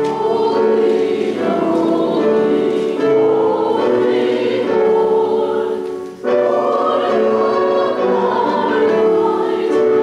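Congregation singing a hymn, with a short break between phrases about six seconds in.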